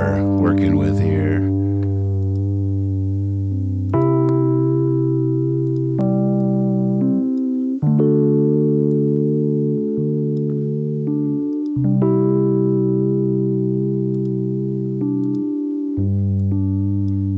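A recorded keyboard part played back: held chords that change every two to four seconds, each fading a little as it is held.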